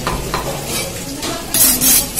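A large curved fish-cutting knife scraping in quick strokes: a couple of light knocks and scrapes at first, then a run of loud, high scraping strokes in the last half second.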